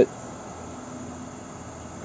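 A pause between sentences of speech, holding only steady background noise: an even hiss with a faint, constant high-pitched hum and no distinct sound events.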